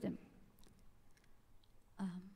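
A woman's voice finishing a word, then a quiet pause with a few faint, scattered clicks.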